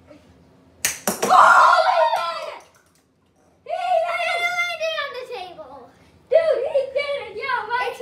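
A hockey stick smacks a ball with a sharp crack about a second in, followed by children shouting and exclaiming loudly in reaction.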